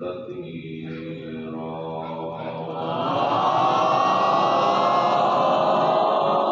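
A man's voice chanting in long, drawn-out held notes, becoming louder and fuller about halfway through.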